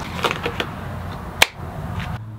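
Disposable nitrile gloves being pulled on, with faint rubbery rustling and one sharp snap about one and a half seconds in as a cuff springs against the wrist.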